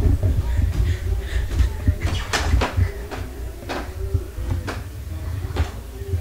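Handling noise from a handheld camera, with a constant low rumble and a string of knocks roughly a second apart.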